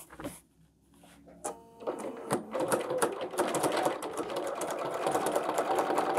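Computerized sewing machine free-motion stitching (thread painting), starting about two seconds in and running steadily at speed with a rapid needle clatter.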